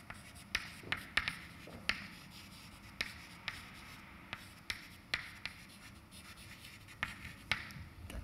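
Chalk writing on a blackboard: a string of sharp, irregular taps, about one or two a second, with short faint scratches between them as words are chalked onto the board.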